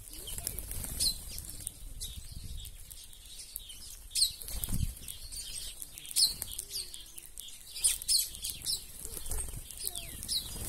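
A mixed flock of songbirds and doves feeding on scattered grain on the ground. Many short, high, down-slurred chirps are heard, mixed with the flutter of wings as birds hop, take off and land.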